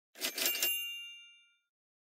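A short metallic jingle: three quick clattering strikes, then a bright ringing, bell-like tone that fades away within about a second.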